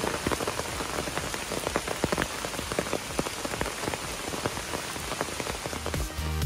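Heavy downpour with many sharp, close drop hits on an umbrella overhead, steady throughout.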